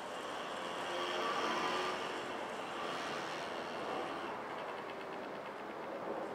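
Street traffic: a vehicle going by on the wet road, swelling to its loudest about a second and a half in and then fading.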